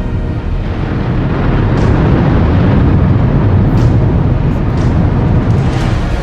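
Deep rumbling of Yasur volcano erupting, swelling louder about two seconds in and staying loud, with quiet music underneath.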